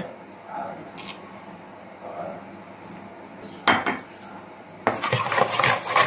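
A metal spoon clinks sharply against a stainless steel mixing bowl, then from about five seconds in scrapes and clinks steadily round it, stirring oil into egg, salt and sugar for dough.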